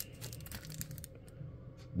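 Clear plastic bag around a trading card crinkling faintly in the hand as it is picked up, a scatter of soft crackles.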